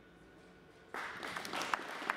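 Near silence, then applause begins suddenly about a second in: many hands clapping together.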